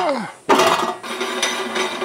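Stainless-steel meat grinder parts clattering and clinking together as the grinder head is fitted onto the electric grinder, starting suddenly about half a second in, with a metallic ring.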